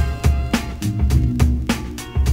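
Background music with a steady drum-kit beat, bass and guitar, in a funk style.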